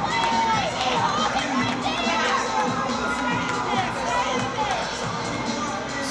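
Crowd of spectators at a track race cheering and yelling, many voices shouting over one another.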